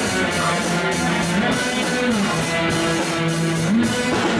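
Live rock band playing: amplified electric guitar over a drum kit, with notes that bend up and down over a steady beat.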